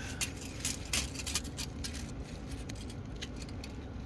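Steel tape measure being pulled out and handled: a run of light metallic clicks and rattles, densest in the first second and a half and sparser after.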